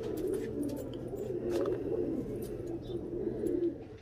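Several Teddy pigeons cooing, their low coos overlapping continuously.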